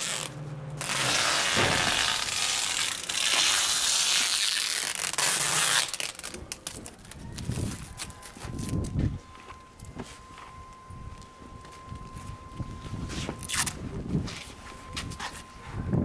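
Packing tape pulled off its roll in one long, loud screech for about five seconds as it is wrapped around a moving blanket, then quieter rustling and scraping of the quilted moving blankets being handled.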